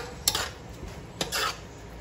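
A spoon scraping and knocking against a large aluminium pot while stirring diced pumpkin and peas: a sharp knock right at the start, another scrape shortly after, and a longer scrape a little past the one-second mark.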